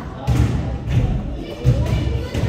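Basketballs bouncing on a hardwood gym floor: a few dull thuds, with voices and music behind.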